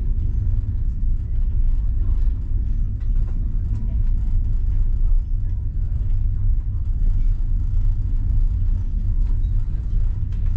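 Steady low rumble of a moving passenger train heard from inside the carriage of the Enterprise, with no change in pace or any distinct knock.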